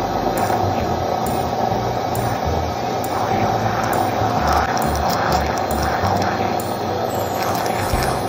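Countertop blender motor running steadily at full speed, puréeing cooked carrot soup to a smooth liquid, a steady whine over the whirring churn.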